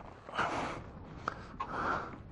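Two short puffs of breath close to the microphone, with a brief click between them, over a faint low rumble.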